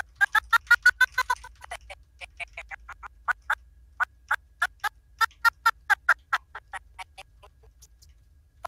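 A recorded voice track stuttering out in short chopped fragments as an animation timeline is scrubbed across for lip-syncing. A quick run of blips comes first, about seven a second, then sparser, uneven ones that fade out near the end.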